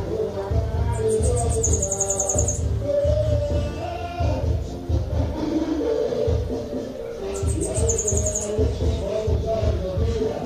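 A caged bananaquit (sibite) singing two short, very high, rapid trills, one about a second in and another about seven seconds in. Louder background music with a steady bass beat plays throughout.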